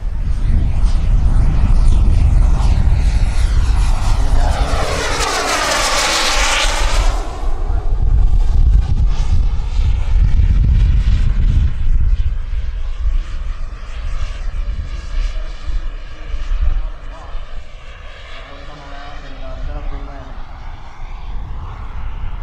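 Turbine engine of a radio-controlled scale Yak-130 jet flying past: a high whine that swells into a loud close pass about five to seven seconds in, its pitch falling as it goes by, then fades as the jet moves away. Gusty wind rumbles on the microphone underneath.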